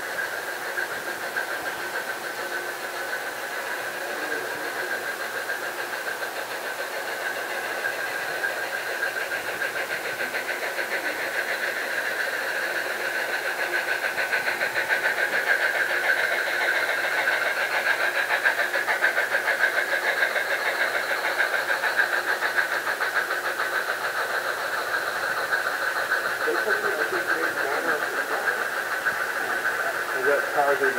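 A model Southern Pacific Daylight steam locomotive and its passenger cars running on the layout track with a steady mechanical hum and rattle, loudest as the train passes close by, from about 14 to 20 seconds in.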